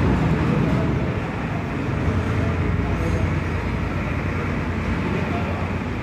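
Steady low rumbling background noise.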